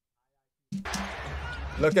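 Silence, then about two-thirds of a second in the NBA broadcast's game sound cuts in suddenly: arena crowd noise with a basketball bouncing on the hardwood court.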